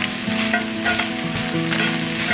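Frozen broccoli florets, chicken, onion and garlic sizzling steadily in hot oil in a skillet, with a few light clicks.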